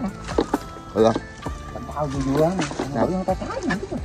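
Men talking over background music.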